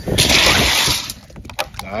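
A hand digging through ice and meltwater inside a soft-sided bag cooler: ice cubes clattering and crunching loudly for about a second, then a few light clicks and knocks as the plastic water bottle comes out.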